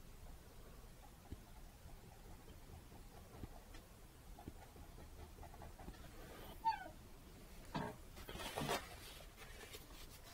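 Low-level room sound with faint taps of a small brush dabbing paint onto canvas. About two-thirds of the way in comes a brief, sharp squeak with a short falling pitch. A rustle follows near the end, as a paper towel is handled.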